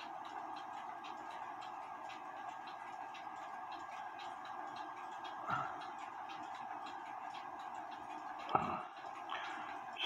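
A mechanical clock ticking evenly and quietly over a steady hum, with two brief soft handling sounds about five and a half and eight and a half seconds in.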